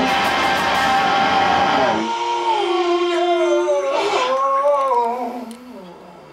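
Heavy distorted electric guitar music: dense, full playing for about two seconds, then the low end drops away and a sustained lead line bends and wavers in pitch, fading out near the end.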